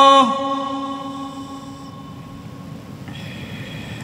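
A male reciter's long held note of Quran recitation ends a moment in with a short downward slide. Its echo dies away over the next second or so in a large, reverberant hall, leaving a low room murmur.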